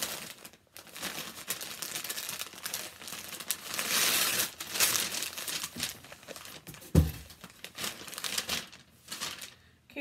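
Tissue paper crinkling and rustling as a wrapped bundle of clothes is unwrapped, loudest about four seconds in, with a single dull thump about seven seconds in.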